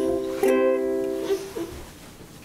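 Ukulele chords strummed: one chord is already ringing, a second strum comes about half a second in, rings and fades away near the end.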